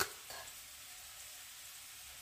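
Faint, steady sizzle of sliced potatoes frying in a skillet.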